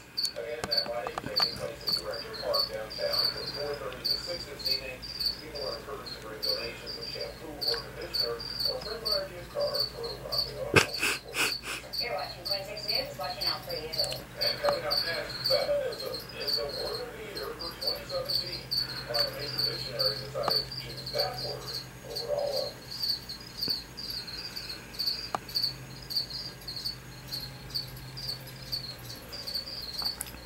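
Feeder crickets chirping: a high, rapid chirp repeated over and over without a break, with faint muffled voices underneath and a short run of clicks about eleven seconds in.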